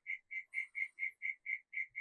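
A quiet, steady run of short high-pitched chirps, about five a second, from a calling animal.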